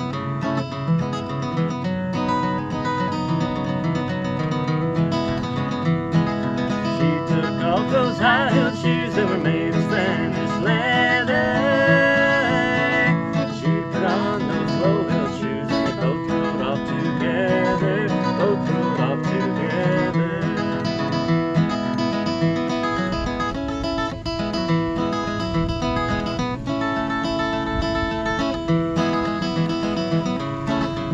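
Acoustic guitar strummed and picked, playing a folk ballad accompaniment.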